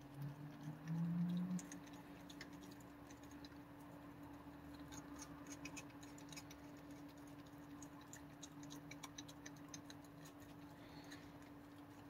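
Faint, irregular clicking and ticking of a raccoon working its paws in a metal water bowl, dunking and handling its food. A brief low hum of a voice comes about a second in, over a steady low electrical hum.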